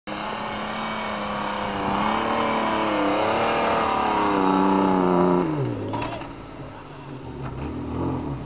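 Land Rover Defender engine working hard at high revs as it climbs a soft sand dune. The revs waver, then drop sharply about five and a half seconds in and the engine goes quieter as the climb runs out of momentum.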